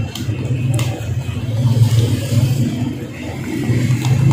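Steady low machine hum, with a couple of short clicks in the first second.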